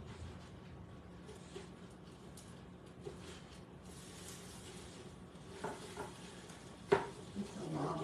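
Quesadilla faintly sizzling in an electric skillet while a utensil cuts and scrapes across it, with one sharp tap a little before the end.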